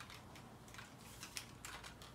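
Faint clicks and taps of hands handling and posing a large plastic and die-cast action figure's arm, with a few sharper clicks in the second half.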